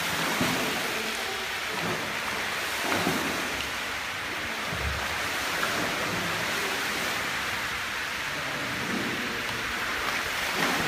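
Continuous splashing and churning of water from swimmers' strokes and kicks in an indoor pool hall.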